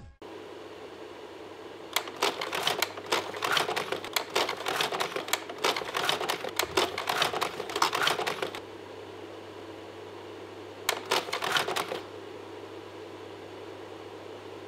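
A steady low hum with a long run of rapid, irregular clicking that starts about two seconds in and lasts about six seconds, then a shorter run of clicking about eleven seconds in.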